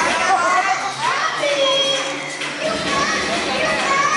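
A crowd of children shouting and squealing over one another, many voices at once, with no music beat under them.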